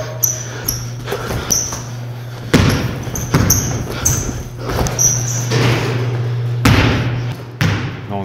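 Basketball play in a gym: a ball thudding on the court several times and sneakers squeaking in short chirps, over a steady low hum.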